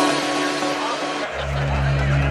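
Electronic dance music: a noisy stretch, then a deep bass line comes in a little past halfway.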